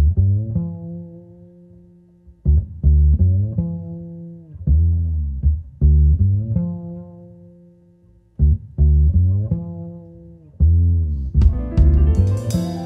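Upright double bass played solo pizzicato: short phrases of plucked low notes, each left ringing and fading over a second or two, with pauses between phrases. Other instruments come in just before the end.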